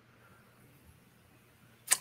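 Near silence, with a man's voice starting to speak just before the end.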